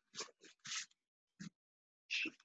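Three short, faint bursts of movement sound in quick succession from a taekwondo practitioner shadow boxing, throwing punches.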